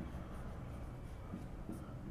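Pen writing on a sheet of paper: faint scratching strokes as a short word is written.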